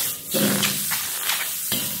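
Shellfish sizzling in an oiled wok heated to smoking point, with the metal ladle and spatula clicking and scraping against the wok as they are stirred.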